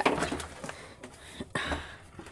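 Orange plastic tub being handled and shifted: light knocks and scraping, with a sharper knock about one and a half seconds in followed by a brief scrape.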